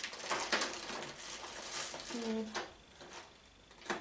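Small hard craft items clattering and rustling as someone rummages through supplies, irregular and busiest in the first half, with a quieter stretch near the end.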